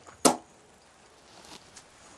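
A single short, sharp click, followed by quiet room tone.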